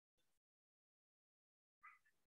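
Near silence, with only two very faint, brief blips, one near the start and one near the end.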